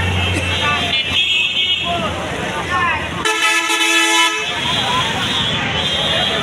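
A vehicle horn sounds once, a steady blare lasting about a second, a little past the middle, over the chatter of a busy street market.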